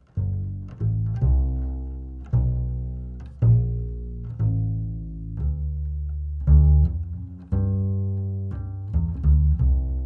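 Double bass played pizzicato: a line of low plucked notes, roughly one a second, each ringing and fading before the next. It is heard through an Audio-Technica BP899 omni lavalier mic clipped at the bridge.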